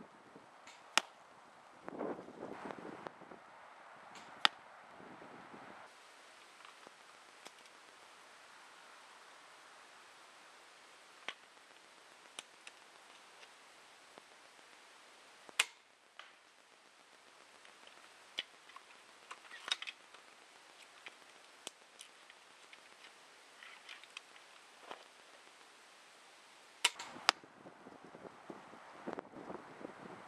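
Armex pistol crossbow, fitted with a stock, being shot. Sharp snaps of the string and bolt come several times, the loudest about a second in, about four seconds in, in the middle, and two close together near the end. Between them there is rustling of handling and movement.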